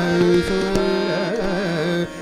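Hindustani classical khayal vocal in Raag Bhoop: a man's voice singing a wavering, ornamented melodic phrase over a steady harmonium and tanpura accompaniment, with a couple of tabla strokes.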